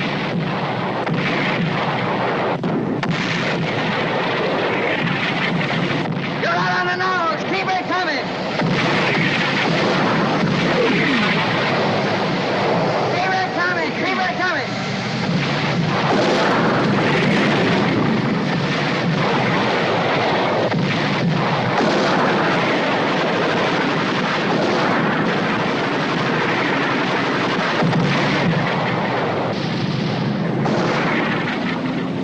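War-film battle soundtrack: a continuous barrage of artillery shell explosions and gunfire, with tank guns firing. Voices shout briefly about seven seconds in and again around fourteen seconds.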